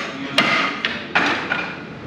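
Wooden Wing Chun training dummy (mook jong) struck by the forearms and hands: three sharp wooden knocks in quick succession within the first second or so, the middle one lighter, each with a brief ring.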